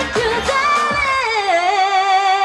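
A K-pop girl-group pop song at the end of the number: the backing beat drops out about half a second in, leaving a long held sung note with vibrato that slides down once partway through and carries on.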